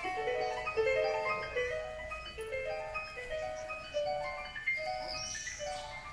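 Symphony orchestra playing a classical piece: a light melody of short, separate notes that grows quieter toward the end.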